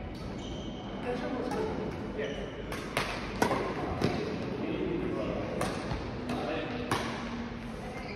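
Badminton rackets striking a shuttlecock back and forth in a rally: about half a dozen sharp cracks, the loudest near the middle, ringing in a large sports hall.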